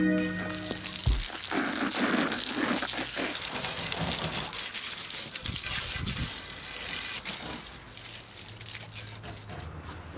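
Water jetting from a garden hose and splashing over a muddy bicycle frame and wheels: a steady rushing spray that weakens about three-quarters of the way through.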